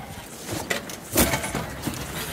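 A cabin-top sheet winch on a sailboat being worked by hand: a few sharp clicks and knocks, the loudest just past a second in, over steady wind and water noise.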